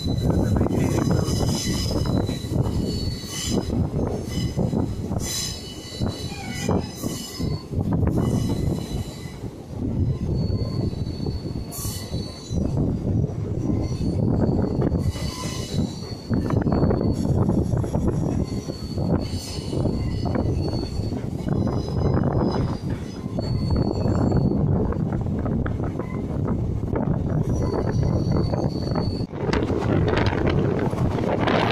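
Diesel-electric multiple unit train running on curving track, heard from an open coach doorway: a steady rumble of wheels on rails, broken again and again by high-pitched wheel squeal as the train takes the curves.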